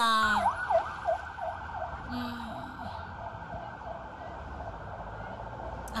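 Police vehicle siren in a rapid yelp, dipping and rising about four times a second, loudest at first and fading within a few seconds into a steady rushing noise.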